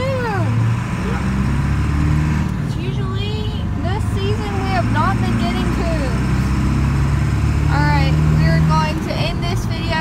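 Steady low rumble of a vehicle driving, heard inside the cab, with short vocal sounds that glide up and down in pitch over it at intervals.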